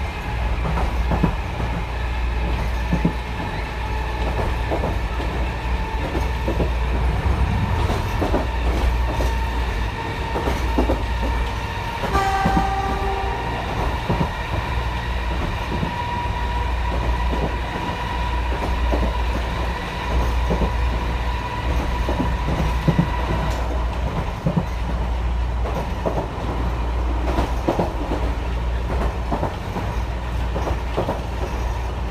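Chikuho Electric Railway 3000-series car running at speed, its nose-suspended (tsurikake) traction motors growling, heard from inside the car through open windows, with wheels clicking over the rail joints. About 12 seconds in, the train's horn sounds once, for about a second.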